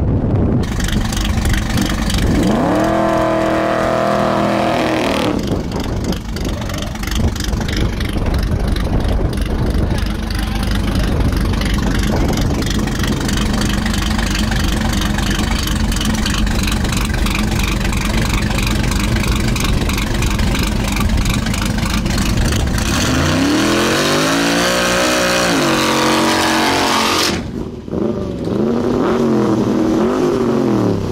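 Big-block V8 drag-car engine, unmuffled, being revved: its pitch climbs and falls a couple of seconds in, then a long stretch of rough, lumpy running, then rising and falling revs again twice near the end.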